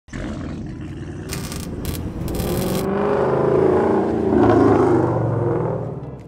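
Car engine revving, building in loudness and pitch to a peak about four and a half seconds in, then fading away. Several brief bursts of hiss come between one and three seconds in.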